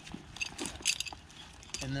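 Metal climbing hardware on a harness (carabiners and ascender) clinking a few times as the climber steps up and loads the rope.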